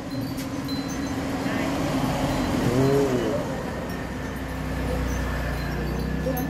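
A road vehicle passing, its noise swelling to a peak about midway and then easing, with people talking under it.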